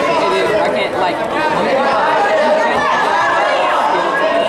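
Many voices talking at once, overlapping into a steady chatter at an even level.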